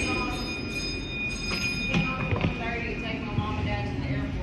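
Indistinct voices of people talking in a tire shop bay, over a steady high-pitched whine and a low hum, with a few short knocks about two seconds in.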